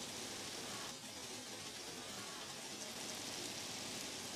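Ground beef sizzling steadily in a frying pan as it browns, a constant hiss.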